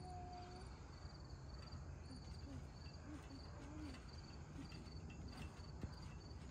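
Crickets chirping, faint: a high pulsed chirp repeating steadily about two to three times a second.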